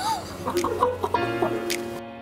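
A man laughing in short, high-pitched bursts, over background music whose steady held tones come in a little past halfway.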